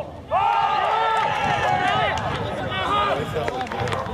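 Several voices suddenly shouting and cheering together at a goal being scored, starting under a second in and dying down after about three seconds, followed by a few sharp claps.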